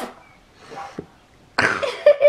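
A short pause with little sound, then near the end a sudden cough-like burst of breath from a child.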